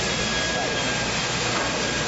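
Steady rushing noise of machinery or moving air, with a faint thin whine above it.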